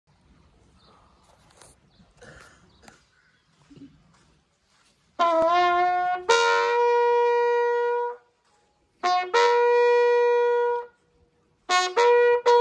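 Bugle sounding a funeral last-salute call. After a faint start, a rising note enters about five seconds in and turns into a long held note. After a short pause comes a second long held note, and a run of shorter notes begins near the end.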